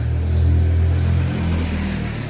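A motor engine running close by: a steady low hum that eases off a little toward the end.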